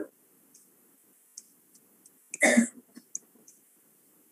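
One short throat clearing, about half a second long, a little past halfway, with a few faint ticks of a stylus writing on a tablet screen around it.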